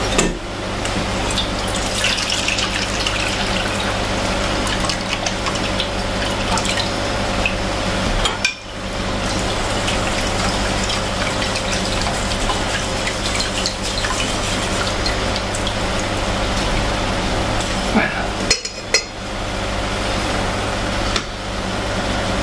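Freshly squeezed orange juice being strained through a metal mesh sieve into a stainless-steel bowl, with a spoon stirring and pressing the pulp against the mesh, over a steady background hum.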